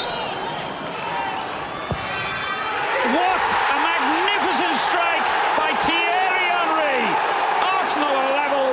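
Football stadium crowd murmuring, then a single sharp thump about two seconds in as a free kick is struck. About a second later the crowd breaks into a loud, sustained roar of cheering, shouting and whistling as the ball goes in for a goal.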